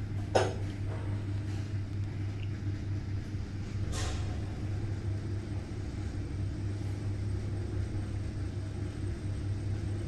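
Toshiba cargo lift car travelling upward: a steady low hum and rumble of the ride heard inside the cab, with a sharp clunk just after the start and a fainter click about four seconds in.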